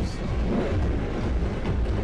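Music with a heavy bass plays loudly, mixed with the low rumble of a car rolling slowly past in a parade.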